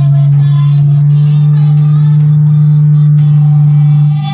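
Loud music dominated by one long, steady, low held note, with fainter music behind it.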